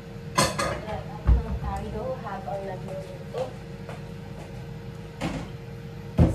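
Kitchen wall-cupboard door knocking as it is handled: two sharp clicks at the start, a dull thump about a second in, and another knock near the end.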